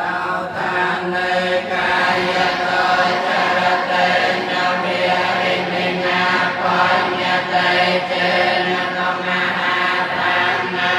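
Group of Theravada Buddhist monks chanting together in unison, many male voices on a steady, held monotone, as at the blessing of a food offering.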